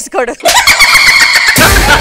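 A short, busy sound effect with a wavering squeal, then background music with a heavy bass comes in about three-quarters of the way through.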